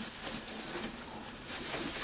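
Shredded paper filling rustling and crackling softly as a hand rummages through it inside a box drawer.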